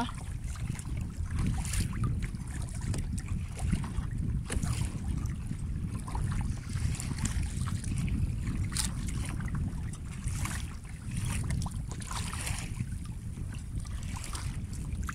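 Wind rumbling on the phone's microphone over water lapping against a kayak, with the light splash of paddle strokes every couple of seconds.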